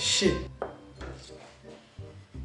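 A short hissing breath and a brief falling vocal sound at the start, then quieter, with faint background music.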